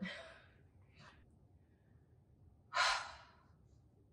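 A woman sighing: one breathy exhale about three seconds in, with a fainter breath about a second in.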